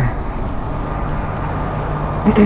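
The 2004 MCI D4500 motorcoach's diesel engine idling, a steady low rumble.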